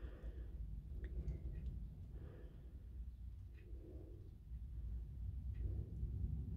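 Quiet room with a steady low rumble, a person's soft breathing swelling about every second or two, and a few faint small clicks.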